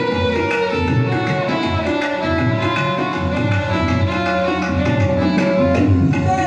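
Violin playing a Hindi devotional bhajan melody in long, gliding bowed notes, over a steady tabla rhythm.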